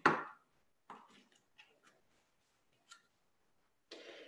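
Faint handling noises of paintbrushes on a tabletop: a short knock right at the start, then a few light, scattered clicks and taps.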